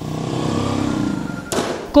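Location background noise: a steady low rumble, then a short sharp burst of noise about one and a half seconds in.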